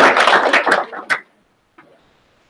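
Applause from a small crowd clapping, thinning out and then cutting off abruptly about a second in, after which there is near silence.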